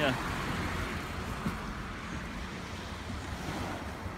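Small waves washing against a concrete sea wall at high tide, a steady hiss of water, with wind rumbling on the microphone.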